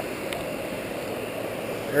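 Shallow surf washing around a wader's legs: a steady rushing noise, with a small click at the start.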